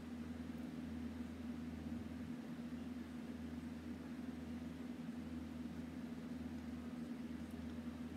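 Steady low background hum with a faint even hiss, unchanging throughout; no distinct handling sounds.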